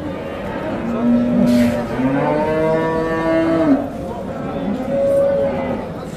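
Cattle mooing: one long moo of nearly three seconds, starting about a second in and rising slightly in pitch, over the hubbub of a livestock market.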